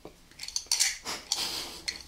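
Close-miked wet mouth sounds of licking and sucking a hard Sucker Punch lollipop: irregular smacks and clicks of lips and tongue on the candy.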